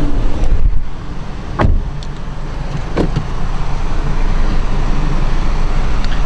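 2009 Honda Civic's 1.8-litre four-cylinder engine idling steadily, heard from in and around the cabin. A thump comes about one and a half seconds in and a sharp click about three seconds in.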